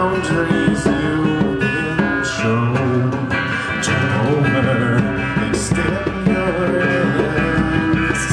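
Live blues-rock band playing a song: acoustic guitar strumming under a man's singing voice, with short cymbal-like hisses now and then.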